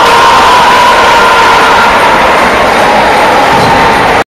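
Crowd cheering and shouting loudly in a sports hall after a table tennis point, with one steady high note held above the noise.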